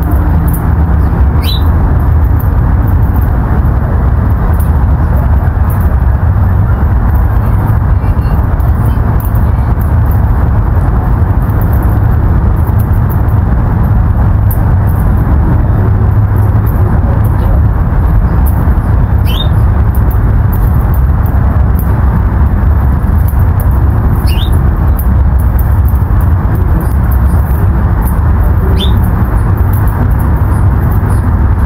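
A steady, loud low rumble of outdoor noise, with short high chirps from a small bird four times: once a little after a second in, then three more in the last ten seconds or so.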